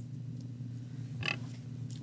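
Steady low room hum, with one short voice sound from a person a little over a second in.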